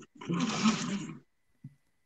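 A person's short breathy, drawn-out vocal sound, lasting about a second, like a hesitation filler, then a brief quiet.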